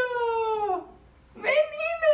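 A toddler whining in high-pitched, drawn-out calls: the first falls in pitch and trails off a little under halfway through, and after a short pause a second one starts near the end.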